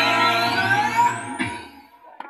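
Dance music playing through a portable loudspeaker, with a high sweep rising steadily in pitch over the first second and a half. The music then stops abruptly near the end.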